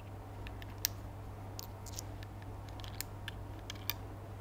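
Scattered light metallic clicks from handling an opened top-break revolver just loaded with six cartridges, over a steady low hum.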